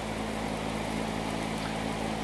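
Electric fan running steadily, a low hum under an even rush of air as it blows across the model sail.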